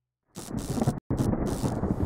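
Thunder sound effect from an animated logo sting: a rumbling crash starts suddenly about a third of a second in, cuts out for an instant near the middle, then carries on.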